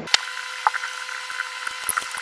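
A few scattered light clicks from handling a separatory funnel, over a steady hiss with a faint hum.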